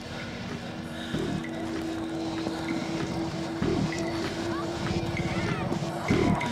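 Film soundtrack drone: a sustained low note over a deep rumble, with heavy low thuds about a second in and again midway.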